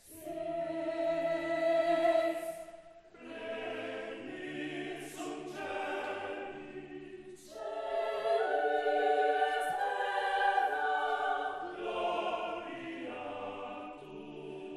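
Mixed choir of men's and women's voices singing sustained chords in phrases, with a brief break about three seconds in and another about halfway through before a fuller phrase.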